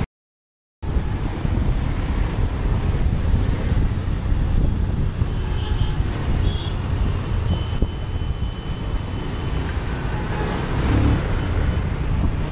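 Motorcycle riding in city traffic: steady engine, road and traffic noise with wind on the microphone, after about a second of total silence at the start.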